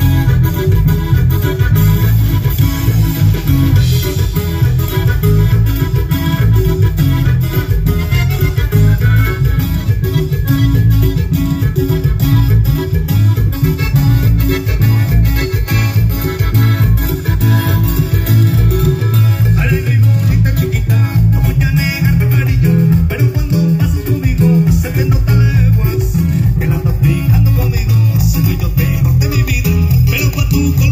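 Live band playing Latin dance music through a loud sound system, with strong bass and guitar.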